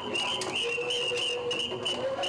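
A steady high whistle tone over lion-dance percussion, with sharp cymbal-like clashes about three times a second.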